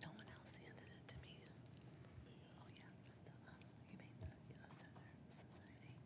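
Near silence: room tone with faint murmured voices and a few small clicks.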